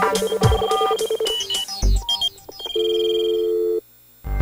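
Tail of a radio programme's electronic intro jingle. Short synthesized notes and blips give way to a steady held electronic tone lasting about a second, which cuts off suddenly near the end.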